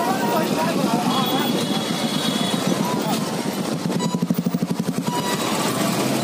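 Several motorcycles running along a dirt track, heard from one of the bikes, with people's voices over the engines. A rapid pulsing runs for about a second, about four seconds in.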